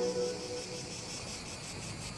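Insects chirring outdoors: a steady, high, rapidly pulsing buzz. Background music fades out at the very start.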